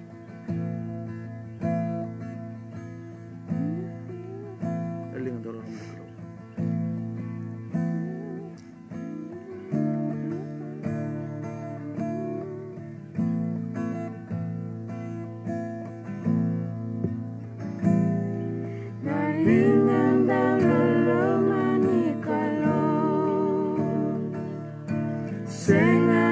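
Acoustic guitar playing slow strummed chords, about one strum a second, each chord left to ring. Near the end, voices come in singing along with it.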